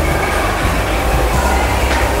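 Chalk writing on a blackboard, a sharp tap near the end, over a steady low rumble of room noise.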